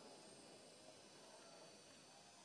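Near silence: a faint steady hiss with no distinct sound events.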